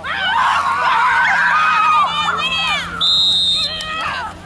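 Several spectators shouting and yelling together during a football play, then a referee's whistle blows one short steady blast about three seconds in, blowing the play dead.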